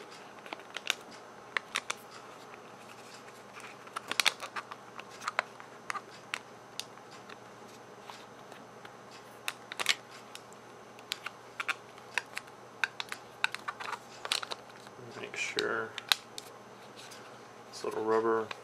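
Small, irregular clicks, taps and light scrapes of a 1.8-inch laptop hard drive being handled and slid into the drive bay of a Dell Latitude D430, with a few sharper clicks in clusters.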